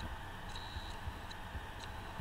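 Light, irregularly spaced ticks of a stylus tapping and writing on a pen tablet, a few a second, over a steady background hiss.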